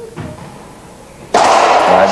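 Racquetball play in an indoor court: a single dull thud of the ball on the floor, then, just over a second later, a sudden loud burst of noise that carries on as the serve is hit.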